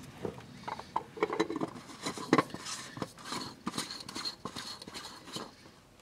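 Black plastic oil filter cap, with its cartridge element, being fitted into the filter housing of a VW Atlas V6 and started by hand. It gives irregular small clicks and short scrapes of plastic on plastic and metal.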